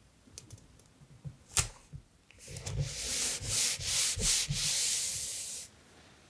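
A few light clicks and one sharper tap, then about three seconds of dry, hissy rubbing on paper in several surging strokes.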